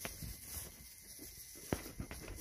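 Faint footsteps through pasture grass, with one sharp click or tap about three-quarters of the way through.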